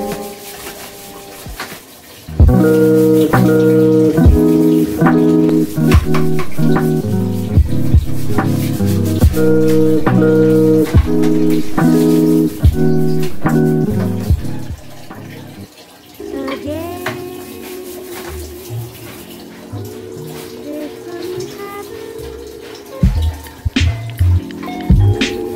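Background music: a rhythmic run of repeated chords that drops away about fourteen seconds in, then gives way to a softer passage.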